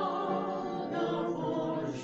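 Three women singing a song together in harmony with piano accompaniment, holding long notes.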